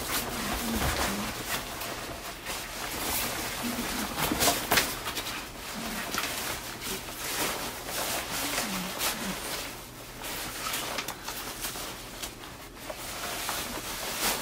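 Camouflage fabric poncho rustling and swishing in irregular bursts as it is pulled over a person's head, with a few short muffled grunts from inside it.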